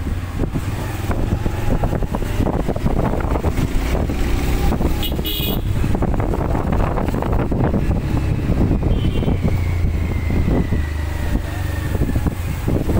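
A two-wheeler's engine running while riding through a street, with a steady low rumble of wind on the microphone. A brief horn toot sounds about five seconds in.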